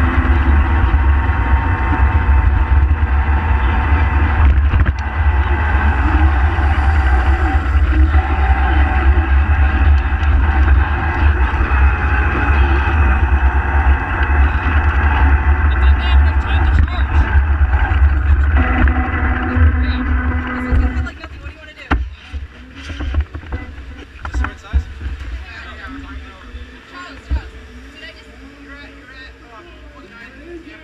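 Onboard sound from a battery-electric Power Racing Series kart on the move: wind buffeting the microphone over a steady motor and drivetrain whine. About 21 seconds in, the kart stops and the noise drops away, leaving faint voices.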